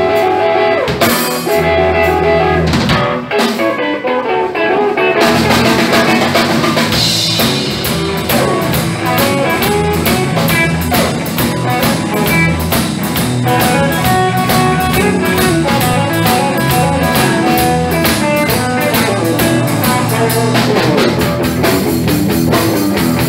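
Live blues-rock instrumental: electric guitars through amplifiers over a drum kit, with no singing. About five seconds in the drums fill out with a steady, even cymbal beat.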